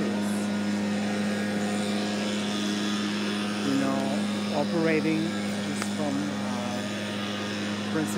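A steady low mechanical hum, with a woman's voice speaking briefly about halfway through.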